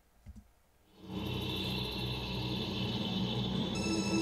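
Opening of a rap music video's soundtrack playing from the computer: a steady, low, noisy drone fades in about a second in, and high sustained tones join near the end.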